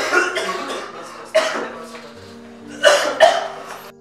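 A sick young man coughing in four harsh bursts, the last two close together, over soft background music; he has had a fever and a cough for days.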